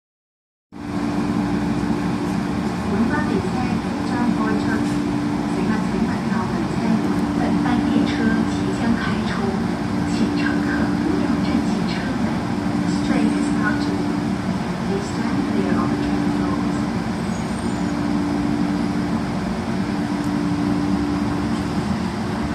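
East Rail electric train standing at a station platform with its doors open: a steady low hum from the train that drops out briefly every few seconds, under the voices of people on the platform.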